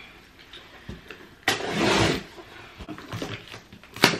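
A large cardboard shipping box being handled and shifted on a chair, with one loud scraping rustle of cardboard about a second and a half in and a few light knocks around it.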